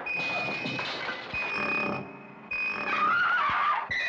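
Eerie horror-trailer soundtrack: a piercing high steady tone cuts in and out three times over a rough, noisy bed, with a few dull thumps. About three seconds in, a wavering whine sweeps up and down.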